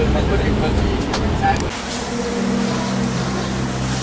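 Tour bus engine and road rumble heard inside the cabin while driving, with a voice over it. Under two seconds in it cuts off abruptly and gives way to a quieter, steady low hum.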